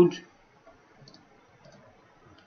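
A few faint computer mouse clicks, spread out over the couple of seconds.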